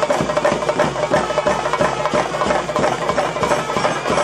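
Traditional temple festival percussion music: drums beaten in a fast, even rhythm over a steady held tone.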